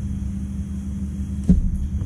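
A steady low hum, with a single short knock about one and a half seconds in.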